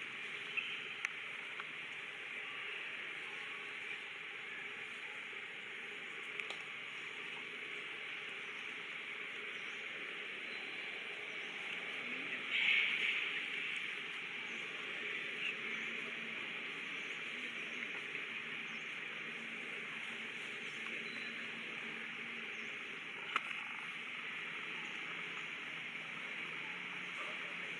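Steady high-pitched drone of insects in a forest, even throughout, with a few faint clicks and a brief louder crackle about halfway through.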